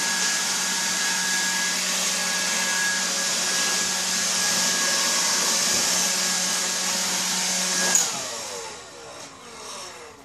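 Handheld leaf blower running steadily at full speed, with a hum and a whine, blowing the dust out of a pleated air filter. About eight seconds in it is switched off and winds down, its pitch falling away.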